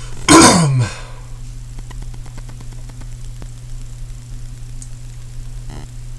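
A man's short vocal noise soon after the start, falling in pitch over about half a second. After it there is only a steady low hum with faint ticks.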